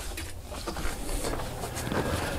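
Faint handling noise from a metal gallon paint can being picked up and moved, a few light ticks over a low steady room hum.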